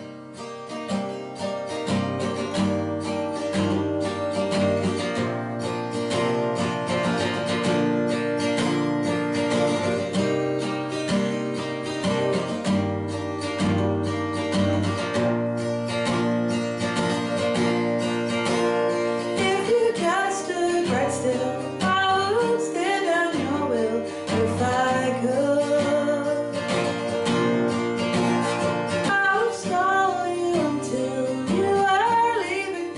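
Acoustic guitar playing a song intro with a steady rhythm; about two-thirds of the way through, a woman starts singing with it.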